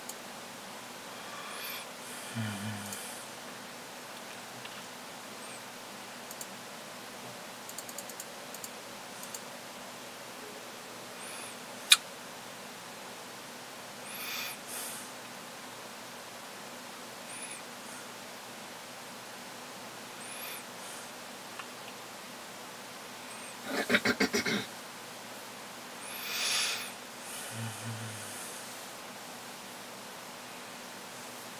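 Quiet room with a steady low hiss and a few faint, scattered small sounds. One sharp click about twelve seconds in, and a brief run of quick pitched pulses, like a short chuckle, about twenty-four seconds in.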